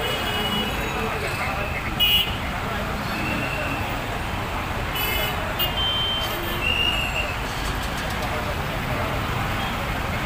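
Busy street traffic: a steady din of small engines and crowd voices, broken by short high-pitched vehicle horn toots, the loudest about two seconds in and several more around the middle.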